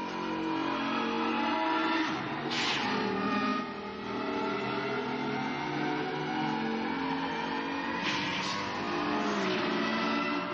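Sci-fi light cycles' synthesized engine drone, several electronic tones running together and slowly shifting in pitch as the cycles race. Whooshing passes cut across it about two and a half seconds in and twice near the end.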